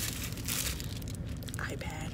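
Clear plastic wrapping crinkling in irregular bursts as a shrink-wrapped package is handled, over a steady low car-cabin rumble.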